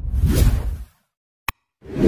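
Animation sound effects: a whoosh lasting under a second, a single short click about a second and a half in, then a second whoosh swelling up near the end.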